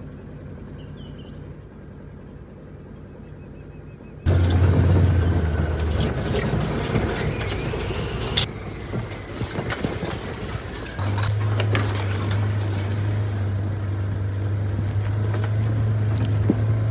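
Quiet outdoor ambience with a few faint bird chirps. About four seconds in, it cuts sharply to a side-by-side utility vehicle being driven along a rough dirt trail: a loud engine hum with rattles and knocks from the open cab over bumps.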